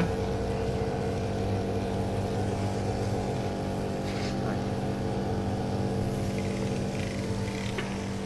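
Pressure cleaning machine's pump running steadily with an even hum while its wand sprays cleaning chemical through a car air-conditioning evaporator core.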